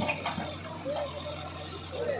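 Diesel engine of a Case 851EX backhoe loader running steadily while the loaded bucket tips soil into a tractor trolley, with a few faint knocks early on.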